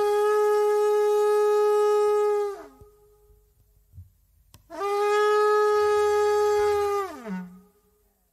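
Two long, steady blasts of a blown horn, each held about two and a half seconds on one pitch and sliding down as it ends, with a short silence between them.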